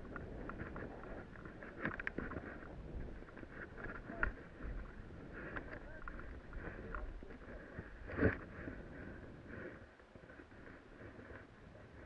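Snowboard sliding and scraping over chopped-up, tracked snow, with a few sharp knocks as it hits bumps, the loudest about eight seconds in. The noise drops off over the last couple of seconds as the rider slows.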